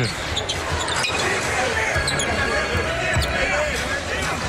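A basketball dribbled on a hardwood court over steady arena crowd noise.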